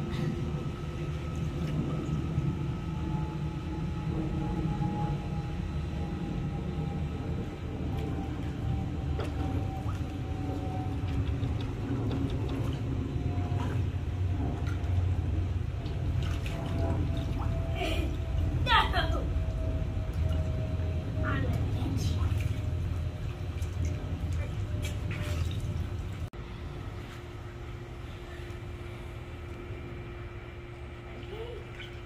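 A steady low rumble with indistinct voices over it and a brief rising squeal about two-thirds of the way through. The rumble drops away about 26 seconds in.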